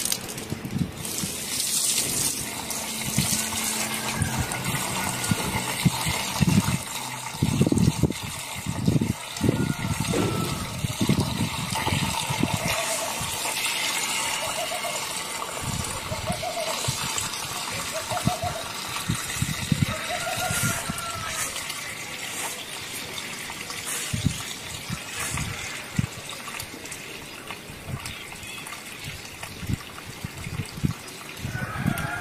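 Water poured from a plastic bucket into a funnel made from a cut plastic bottle on a plastic barrel: a steady gushing stream running into the funnel.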